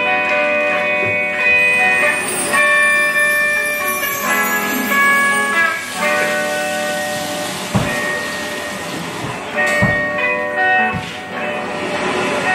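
Live band playing the instrumental opening of a song: held chords on keyboard and guitar, joined by a few low drum hits in the second half.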